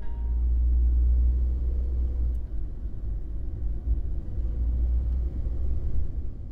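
A car driving along a road: a steady, low rumble of engine and road noise.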